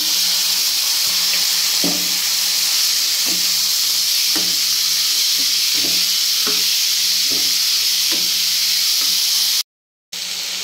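Loud, steady sizzling as chopped green beans, potatoes and carrots fry in hot oil and tempered spices in a kadai. A metal ladle knocks and scrapes against the pan roughly once a second as the vegetables are stirred. The sound cuts off suddenly near the end.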